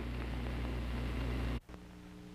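Steady hiss and low hum from an old television film transcription. It cuts off suddenly about a second and a half in, then a fainter hum with a few steady tones carries on.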